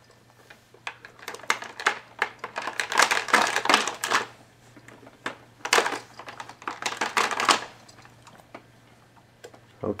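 Plastic toy links and pieces on a baby's activity jumper clicking and rattling as they are handled, in two spells of rapid clatter.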